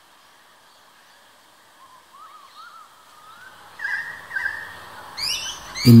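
Birds calling: after a quiet start, a run of wavering whistled notes that rise and fall, growing louder about four seconds in, with a few quick high sweeping notes near the end.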